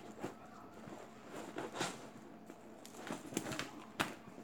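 Rustling and light knocks of items being handled and packed into a handbag, in short scattered bursts with a few clustered near the end.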